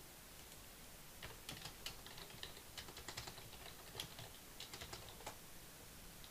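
Faint typing on a computer keyboard: a run of irregular keystrokes starting about a second in and stopping shortly before the end.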